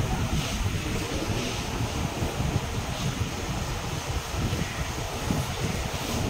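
Steady low rumbling noise, fairly loud and even, with no clear tone or rhythm, like wind or handling noise on the microphone.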